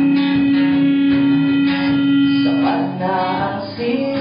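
Live band music: a guitar strummed under a long held note, with singing coming back in near the end.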